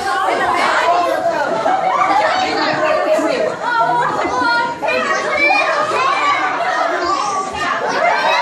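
Overlapping voices of a group of young teenagers chattering and calling out over one another, with some high-pitched squeals, during a lively balloon party game.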